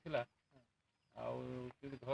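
A man's voice speaking in short bursts, with a pause and then one held, drawn-out vowel of about half a second about a second in.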